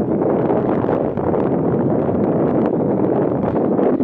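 Wind blowing across the microphone: a loud, steady rush with no let-up.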